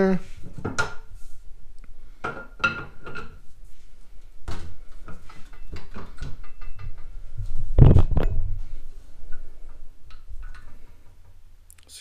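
Metal clanks and knocks from handling a steel floor jack and its tubular handle, with a brief metallic ring near the start. The loudest knock comes about eight seconds in.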